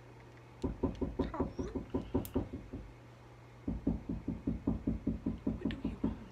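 Rapid knocking taps on a hard surface, in two runs of about two seconds each, roughly ten taps a second, with a short pause between them.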